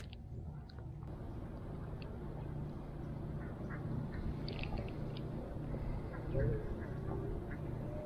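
A Daiwa spinning reel handled on the rod after a cast: a sharp click right at the start, as of the bail snapping shut, then a low, steady rumble of handling and wind on the microphone, with a few faint, short calls in the distance.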